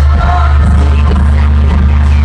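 Live pop music played loud through an arena sound system, with a heavy, steady bass and a singer's voice over it.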